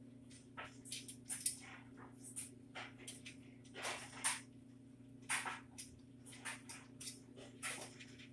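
Scattered light clicks, taps and scrapes of metal bicycle parts being handled as a new wheel's axle is fitted into a bicycle frame, at uneven intervals, over a steady low hum.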